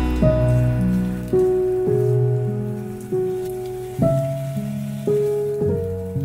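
Background music: a gentle melody of plucked, decaying notes, one about every second. Under it is a faint sizzle of meat slices starting to fry in a nonstick pan.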